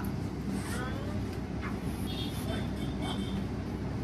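Steady low background hum and rumble, with faint distant voices.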